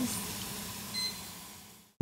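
Soup base sautéing in a stockpot, a steady sizzle that fades out to silence, with a faint short beep about a second in.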